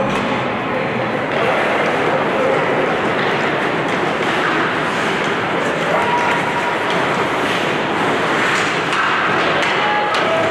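Ice hockey arena during play: a steady wash of indistinct spectators' chatter echoing in the rink, with thuds from the game now and then.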